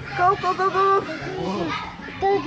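A young child's high-pitched voice making several short wordless calls during play, over the sound of other children playing.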